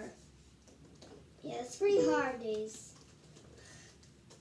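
A child's voice: one short utterance in the middle, its pitch falling at the end, with quiet room sound either side.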